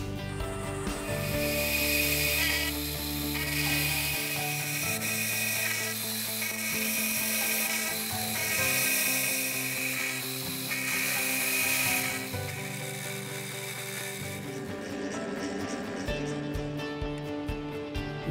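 Milling machine end mill cutting the waste stock out of an O1 tool-steel block, heard as about five separate bursts of cutting noise, each one to two seconds long, in the first twelve seconds. Acoustic guitar music plays steadily underneath.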